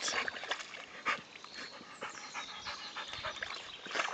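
A dog panting softly with small splashes of muddy water as she stands in a shallow puddle: a heat-stressed dog cooling off in the mud.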